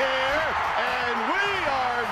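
Ballpark crowd cheering loudly for a walk-off home run, with shouting voices rising and falling over the roar.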